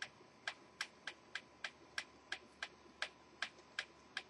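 Faint, evenly spaced clicks, about three a second, from a detented tuning control as a Kenwood TS-50 HF transceiver's frequency is stepped down the band.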